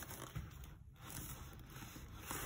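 Gloved hands handling and turning a cardboard box wrapped in plastic film, the film rustling and scraping faintly under the fingers, with a brief lull a little before the middle.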